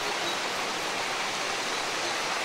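River water flowing steadily, an even, continuous rushing.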